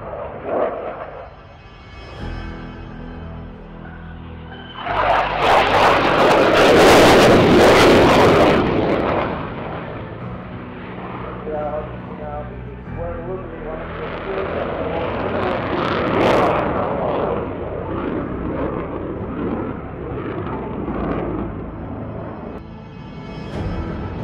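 Twin jet engines of an F/A-18 Hornet in a display flypast, building to a loud, hissing peak about five seconds in that lasts several seconds, then easing to a lower rumble with a brief swell near the middle. Background music plays under it throughout.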